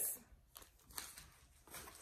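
Faint rustling and crinkling of paper receipts and candy wrappers being handled, with a few soft, short ticks.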